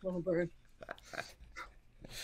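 People laughing: a couple of short laughs in the first half-second, then softer chuckles.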